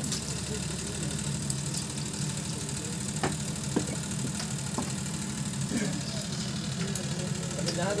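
A steady low mechanical hum, like an idling engine, runs throughout under faint background voices. A few light clicks occur about three seconds in.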